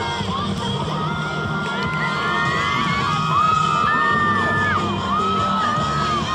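A crowd of young voices cheering and whooping, with several long, high, held yells overlapping, over music.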